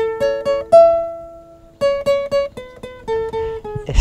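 Acoustic guitar playing a scale one plucked note at a time: a quick climb to a high note that rings out for about a second, a short pause, then the notes stepping back down.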